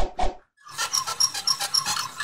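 Sound effects for an animated logo: two quick hits at the start, then from about half a second in a dense rattling run with short high squeaks about four a second.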